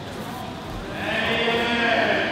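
A person's long, drawn-out shout starting about a second in and held for about a second, over the murmur and shuffling of a crowded hall.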